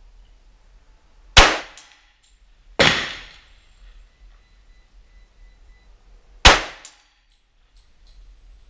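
Three .45 ACP pistol shots from a 1911, spaced unevenly, mixed with the metallic clang of steel target plates being hit, the middle one ringing out longest.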